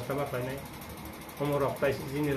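A man speaking in a local language, with a short pause about halfway through.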